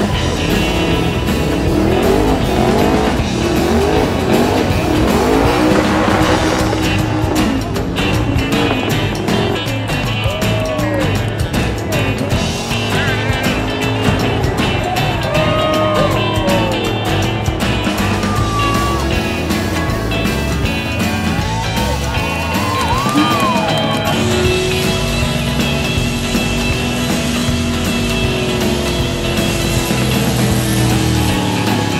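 Burnout: a car's engine revving hard again and again, its pitch sweeping up and down, while the rear tyres spin and squeal on the pavement. Rock music plays over loudspeakers underneath.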